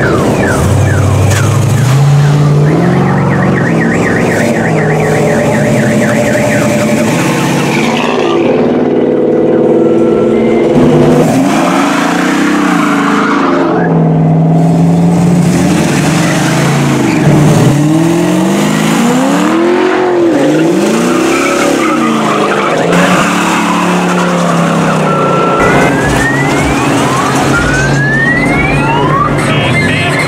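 Engines of several G-body Chevrolet cars revving and pulling away one after another, their pitch rising and falling repeatedly, with a few rising squeals near the end.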